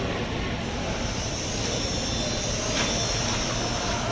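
Steady mechanical background noise, with one faint knock about three seconds in.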